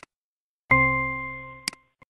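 A mouse click, then a single bright chime from the exercise software that rings and fades over about a second: the feedback tone when a dragged word is dropped into its blank correctly. Two quick mouse clicks follow near the end.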